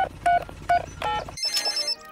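Mobile phone keypad beeps, four short tones about a third of a second apart, over a low helicopter engine hum. About 1.4 s in, the hum cuts off and a mobile phone starts ringing with a high, pulsing ring: the call going through.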